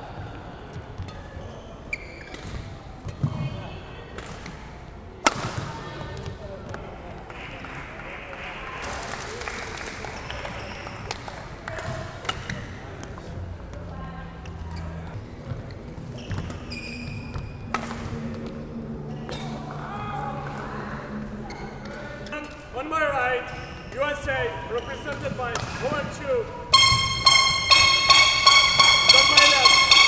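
Badminton play in a sports hall: sharp racket strikes on the shuttlecock and short squeaks of court shoes on the floor, with voices around. Near the end a loud, high, rapidly pulsing tone starts and becomes the loudest sound.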